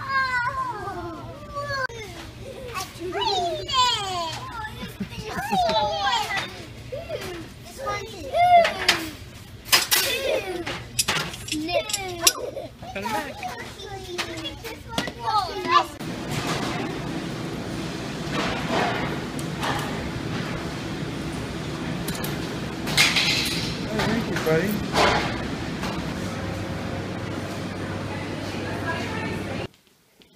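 Young children squealing and calling out as they play, with a few sharp knocks among the voices. About halfway through this gives way to a steady background hum with fainter voices.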